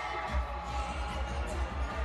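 Cheerleading routine mix music played loud in an arena, with a heavy, pulsing bass beat.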